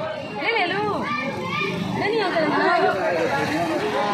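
Speech: a woman talking, with street background noise.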